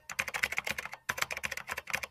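Keyboard-typing sound effect: a rapid run of key clicks, several a second, with a brief break about a second in, accompanying text that types itself onto the screen.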